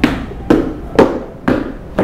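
Sharp percussive beats keeping time for a dance step, evenly spaced two a second, each with a short room echo.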